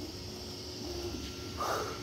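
Creality Ender 3 V3 SE 3D printer running mid-print: its fans give a steady whir, with faint humming tones from the stepper motors. A short breath near the end.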